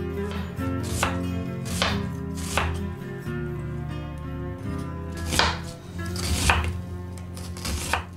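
Kitchen knife slicing through a halved onion onto a wooden cutting board: about six unevenly spaced cuts, the ones in the second half louder.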